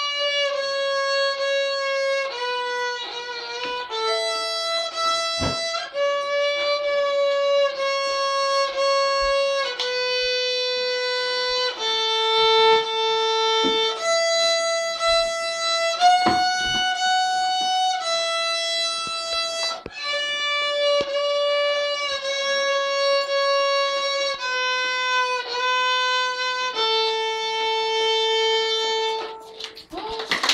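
Solo violin played by a young child: a slow, simple melody of bowed notes held a second or two each, one note at a time, stopping just before the end.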